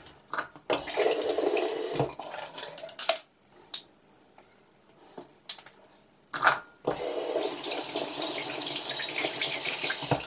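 Bathroom sink tap running into the basin in two spells: for about two seconds starting a second in, then again from about seven seconds in.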